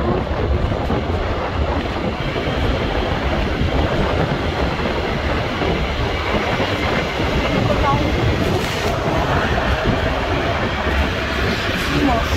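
Steady rumble of wind on the microphone and road noise while riding along a road, heaviest at the low end.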